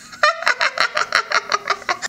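A woman laughing in a fast, high cackle of short 'ha' pulses, about seven a second.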